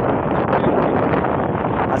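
Wind blowing across the microphone, a steady rushing noise.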